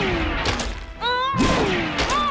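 Action-cartoon soundtrack: dramatic score mixed with a weapon blast and impact sound effects. About a second in the sound dips, then a brief wavering pitched sound follows.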